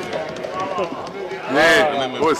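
Men's voices talking over one another in a large chamber, with one voice louder near the end.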